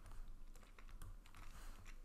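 Faint, irregular clicks and taps of a stylus writing on a tablet screen.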